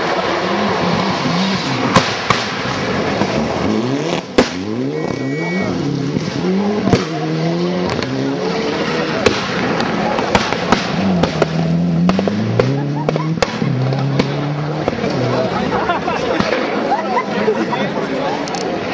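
Subaru Impreza rally car's flat-four engine revving hard on a gravel stage, its pitch climbing and dropping again and again through gear changes as it approaches and goes by, with sharp cracks now and then.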